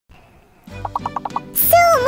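A short comic sound effect: a quick warbling run of about seven short pitched notes, followed near the end by a sharp hiss and a voice starting.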